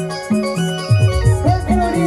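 Arranger keyboard playing Adivasi timli dance music: an organ-like lead melody over a driving bass line and beat, with a lead note bending down in pitch near the end.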